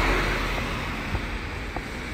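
A car passing on the road, its tyre and engine noise fading away over the first second, over a low steady rumble of wind on the microphone.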